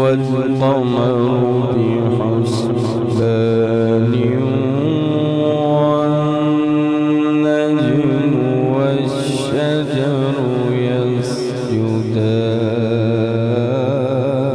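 A man reciting the Quran in the melodic tilawat style into a microphone. He draws out long notes with ornamented turns of pitch, holding one note for several seconds in the middle.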